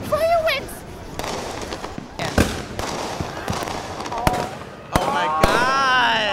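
Fireworks going off outdoors, with sharp bangs about two and a half seconds in and then several in quick succession near the end. Onlookers' voices call out at the start and over the last bangs.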